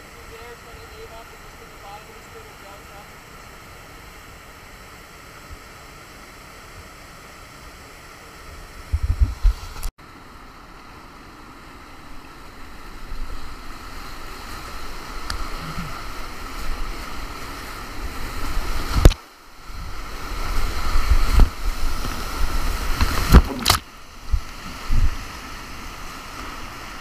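Steady rush of whitewater rapids. About ten seconds in it gives way to the louder rush of whitewater heard from a kayak running the rapid, with several loud buffets of water and splash hitting the camera in the second half.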